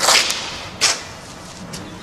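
A sharp swish at the start that fades over a fraction of a second, then a second, shorter swish just under a second in, over low steady background noise.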